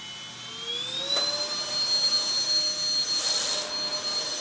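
Stick vacuum cleaner motor spinning up, its whine rising in pitch over about the first second and then holding steady and getting louder as it runs over the floor. There is a brief click about a second in.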